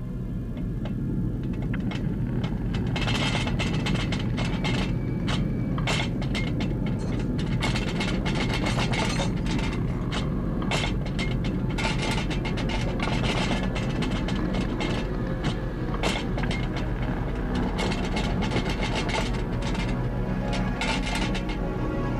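Earth tremor sound: a continuous deep rumble with rapid rattling and clattering that starts about three seconds in, under background music.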